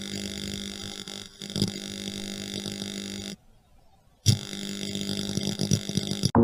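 A steady electric buzz, like a neon sign humming, that cuts out about three seconds in, stays silent for about a second, then starts again suddenly with a click.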